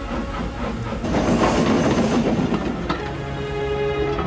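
Soundtrack music with a steam-locomotive effect: a spell of hissing, chuffing noise about a second in, then held musical notes near the end.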